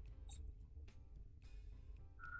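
A few faint computer mouse clicks, then a short run of scroll-wheel ticks, over quiet background music.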